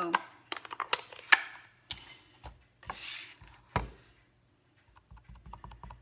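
Clear acrylic stamp blocks and an ink pad being handled on a craft mat: scattered clicks and knocks, one heavier knock near the four-second mark, then a quick run of light taps in the last second.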